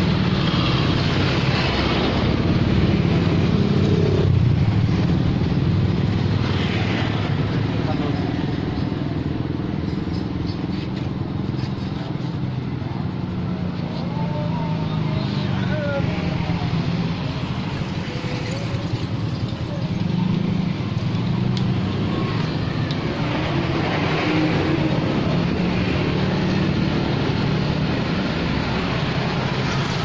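Road traffic going by: motorcycles and other motor vehicles running past in a steady wash of engine noise that swells as individual vehicles pass.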